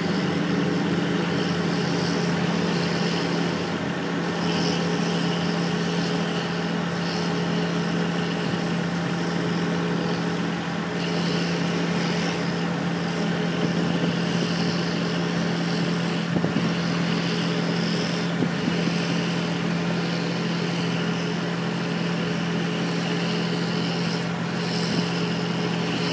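1992 Toyota Camry's 3.0-litre V6 (3VZ-FE) idling steadily under the open hood, with no revving.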